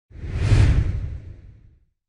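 A whoosh sound effect with a deep low rumble under it, swelling quickly to a peak about half a second in and fading away before two seconds: the intro sting that brings on a company logo.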